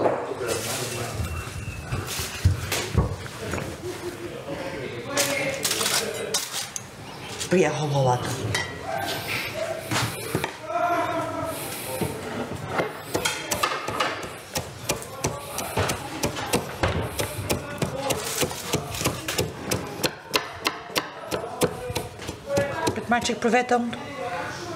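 Kitchen knife chopping on a wooden cutting board, quick repeated strokes through the second half, among talk.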